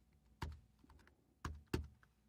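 Faint typing on a computer keyboard: three distinct key clicks, one about half a second in and two close together near the end, with lighter taps between.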